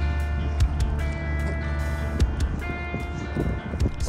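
Background music: a held bass note under sustained chords that change about once a second, with a light regular beat.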